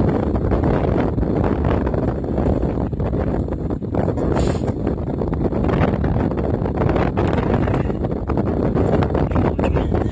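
Wind buffeting the microphone outdoors: a loud, uneven rumble and rush.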